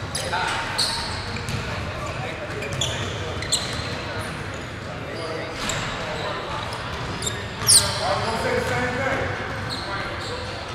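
Basketball bouncing on a hardwood gym floor and sneakers squeaking during play, with voices echoing in a large hall. A sharp, high squeak that falls in pitch, about three-quarters of the way through, is the loudest sound.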